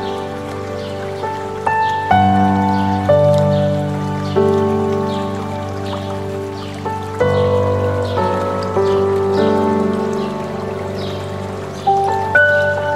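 Soft piano music, slow notes and chords struck about once a second and left to ring, over the steady rush of flowing stream water. Short falling bird chirps repeat high above, roughly once a second.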